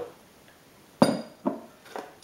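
Glass measuring jug of water set down on a hard worktop: a sharp clinking knock about a second in, with a short ringing, then a second lighter knock about half a second later.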